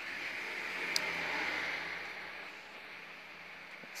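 Hot-air rework blower hissing steadily as it heats a phone's glass back cover to soften the adhesive underneath, a little louder in the first two seconds and then easing. A single sharp click about a second in.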